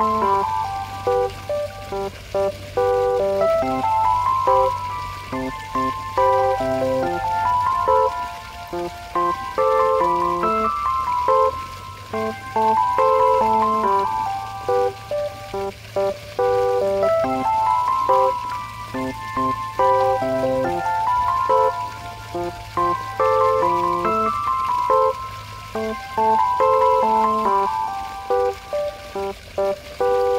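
Background instrumental music: a simple melody of separate notes that steps up and down and repeats its phrases, over a low steady tone.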